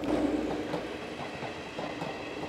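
Passenger train running past, growing a little quieter over the two seconds.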